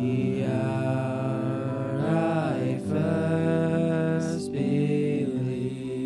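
Live worship music: a slow song with voices singing long held notes over a band of electric guitar and keyboard.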